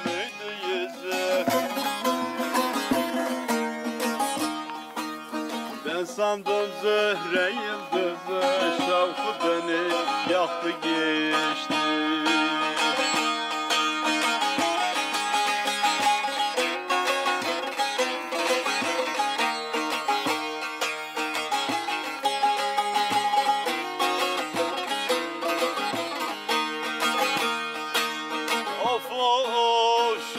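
Bağlama (long-necked Turkish saz) played solo: a quick plucked instrumental passage between sung verses of a folk türkü, with steady low notes ringing under the melody.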